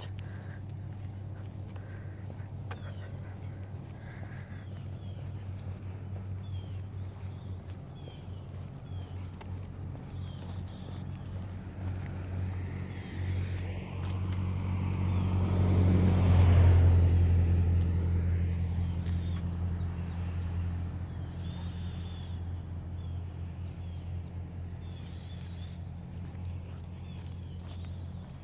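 A vehicle passing on the road beside the sidewalk, its sound swelling to a peak about halfway through and fading away over several seconds, over a steady low hum.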